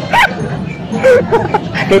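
A person's voice making a few short, pitched yelps or exclamations without clear words.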